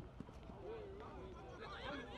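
Faint, distant shouting and calling of football players across an open pitch, with a few short sharp knocks in the first half-second.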